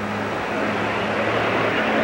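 Steady rushing noise, swelling slightly toward the end, with a low steady hum beneath it.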